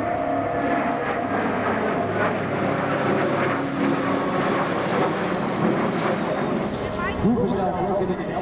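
Jet noise from a formation of a MiG-29UB, L-39s and Alpha Jets flying past: a steady, even rush with a low hum under it, and voices faintly beneath it.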